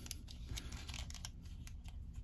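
Faint scattered plastic clicks and handling rustle as an SH Figuarts action figure is posed by hand, its joints and cape being moved.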